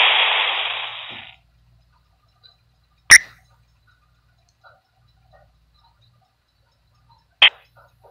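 Two short, sharp knocks about four seconds apart, the first a little after three seconds in and the second near the end, over a faint low hum; a hiss fades out over the first second.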